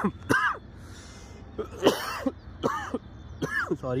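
A man coughing, several short separate coughs spread over a few seconds.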